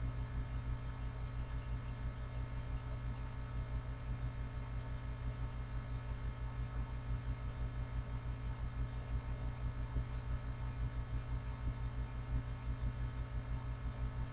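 A steady low hum with a fast, even throb underneath, unchanging throughout.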